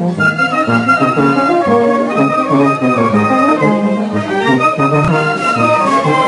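Traditional festival band music played steadily, with brass carrying a melody of many short notes.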